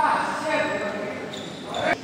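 Court shoes squeaking on a synthetic badminton court mat as players run and stop during a rally: a squeal right at the start, another around half a second in, and a sharply rising one that cuts off just before the end, in a large echoing hall.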